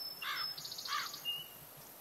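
Faint bird calls in a natural background: two short arched calls about two-thirds of a second apart, with a brief high trill and a short high whistle between and after them.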